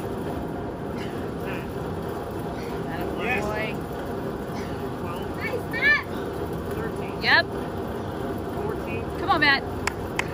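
Large drum fan running with a steady hum. A few short shouts rise over it.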